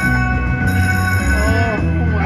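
Buffalo Gold slot machine playing its bonus music with bell-like chimes as the machine awards five extra free games.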